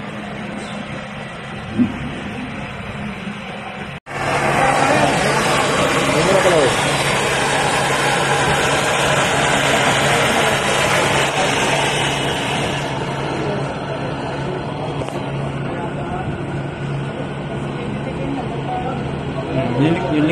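A refrigerator's hermetic compressor hums at first. After a cut about four seconds in, a brazing torch flame hisses steadily while heating a copper refrigerant tube to red heat; the hiss eases a little after about thirteen seconds.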